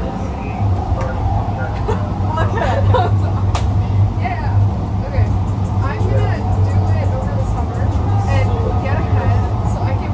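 LA Metro P2550 light rail vehicle running along the track, heard from inside the cab as a steady low hum, with indistinct voices chattering over it. A single sharp click sounds about three and a half seconds in.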